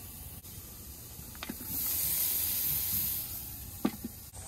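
Burgers sizzling on a Weber portable gas grill: a high hiss that swells about one and a half seconds in and dies away after about a second and a half, with a light click before it and another near the end.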